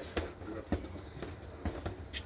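Boxing gloves landing punches during sparring: about five sharp smacks at uneven intervals.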